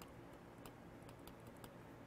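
Near silence with faint, scattered light ticks of a pen writing on a drawing surface.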